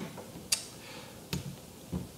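Two short, sharp clicks about a second apart over quiet room tone, with a soft low bump near the end.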